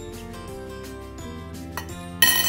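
Background music with held notes throughout; near the end a metal fork clinks once against a ceramic bowl.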